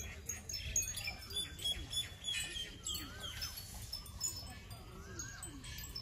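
Outdoor ambience: scattered short, high tinkling notes over repeated short rising-and-falling bird calls.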